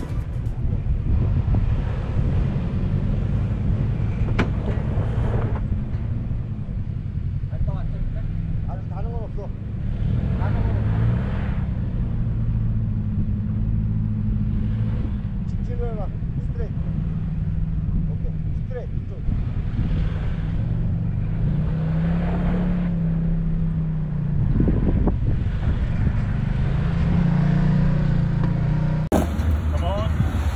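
Off-road 4x4's engine running at low revs as it crawls over slickrock, a steady low rumble that rises and falls in pitch now and then, with faint voices over it.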